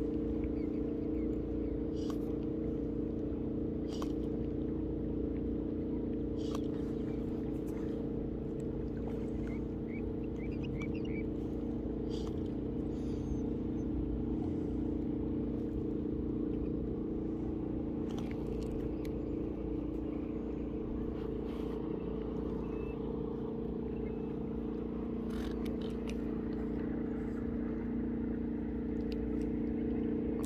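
Motorboat engine running steadily, a constant low drone that does not rise or fall, with a few faint clicks close by.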